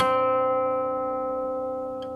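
Guqin, a seven-string Chinese zither, plucked once; the note rings on and fades slowly.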